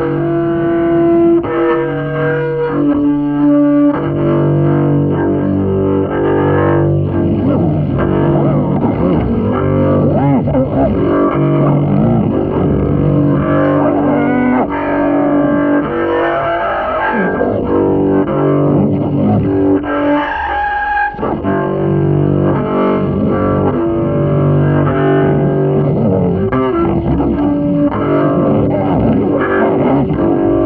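Double bass in free improvisation, playing held notes, often two or more at once, with sliding, wavering pitches through the middle. The sound drops out briefly about three quarters of the way through before the held notes resume.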